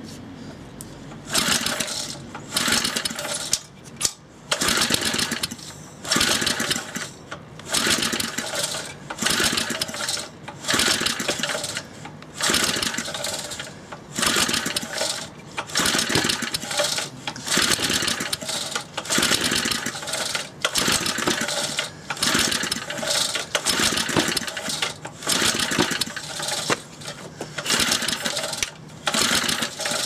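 Briggs & Stratton 60102 2 hp single-cylinder engine being pull-started on choke, its recoil starter rope yanked over and over, about one pull a second, each pull a short burst of rope and cranking noise. The engine does not catch and run; its cylinder wall has been repaired with JB Weld after bad scoring.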